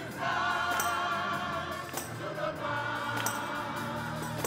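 Church congregation singing a slow gospel song together, many voices holding long notes. A crisp percussion hit marks the beat about every second and a bit.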